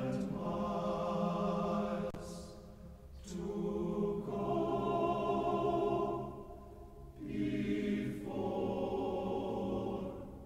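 Teenage boys' choir singing sustained chords in three held phrases, with short breaks and brief hissed 's' sounds between them.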